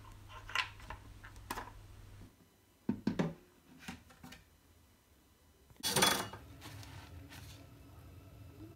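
Plastic parts of a washing machine's detergent drawer clicking and knocking against each other and a stainless steel sink: several separate clicks in the first half, then one louder, longer clatter about six seconds in.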